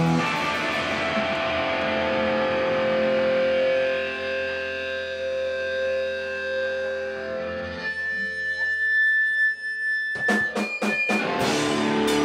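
Distorted electric guitar left ringing through its amplifier, held notes and feedback tones that thin out over several seconds. About ten seconds in comes a quick run of sharp hits, and the full band starts up again near the end.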